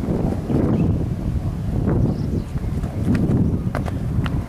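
Wind buffeting the camera microphone in a low, gusting rumble, with two short clicks near the end.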